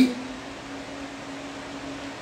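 Room tone: a steady low hum with faint hiss. The tail of a man's word cuts off right at the start.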